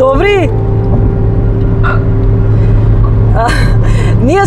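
Steady low rumble of engine and road noise inside a moving car's cabin, with a short voiced sound, rising then falling, right at the start and a brief breathy burst near the end.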